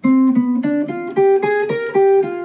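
Hollow-body archtop electric guitar playing a clean single-note jazz line over a G7 chord, a run of separate notes climbing in pitch.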